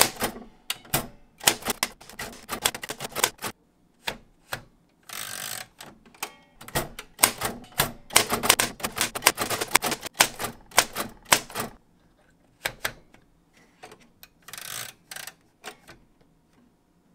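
Typewriter typing: rapid, uneven runs of key strikes on the platen. About five seconds in there is a longer sliding sound as the carriage is returned to start a new line, and the strokes grow sparser in the last few seconds.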